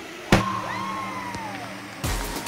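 Ice-rink sound of a youth hockey game just after a goal: a single sharp bang about a third of a second in, then a spectator's long cheer falling in pitch over a steady low hum.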